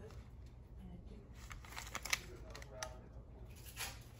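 Paper receipt being handled and looked over, rustling softly with a few short crinkles, the sharpest about two seconds in. A faint voice mutters under it.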